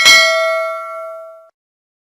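Notification-bell sound effect for the animated bell icon: a single bright ding that rings and fades for about a second and a half, then cuts off abruptly.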